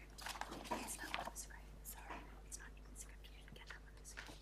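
Quiet room tone with a low steady hum and faint scattered clicks and rustles, mostly in the first two seconds.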